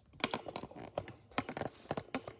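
Handling noise: a quick, irregular run of small clicks and taps as the phone camera is settled into its overhead clip mount.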